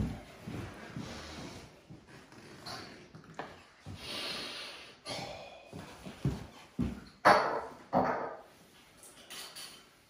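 A wooden spoon stirring thick melted cheese fondue in a ceramic fondue pot: irregular scraping and squelching strokes, with two louder short sounds about seven and eight seconds in.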